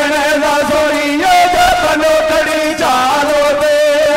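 A man singing a Punjabi Sufi devotional bait through a microphone and PA, in a chant-like melody with long held, wavering notes.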